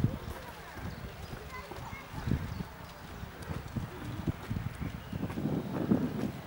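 Outdoor ambience: indistinct voices with irregular low thumps and rumble, louder near the end.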